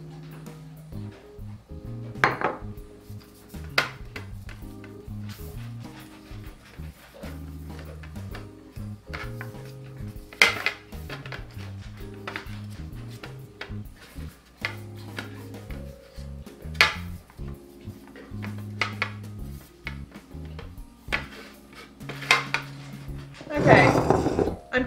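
Aluminium sheet pans clanking a handful of times on a tiled counter as olive oil is spread over them by hand, over background music with a steady bass line.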